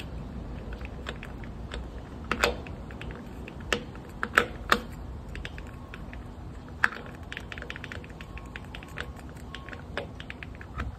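Distributor being twisted back and forth by hand as it is seated in the engine, its shaft and housing clicking and knocking irregularly while the gear hunts to engage the oil pump drive. A few sharper clicks stand out near the middle.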